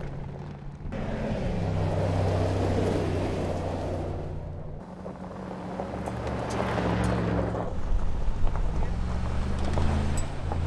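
Mercedes-AMG G 63's twin-turbo V8 running under load as it drives over gravel, with the crunch of tyres on loose stones and a few sharp stone clicks. The engine note shifts in pitch about a second in and again around five seconds.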